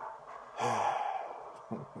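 A man's long sigh of shock: a breathy exhale with a brief voiced start about half a second in, fading away over about a second.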